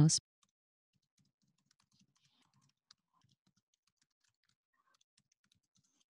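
Faint, irregular clicking of computer keyboard keys as text is typed, with one slightly louder click about three seconds in.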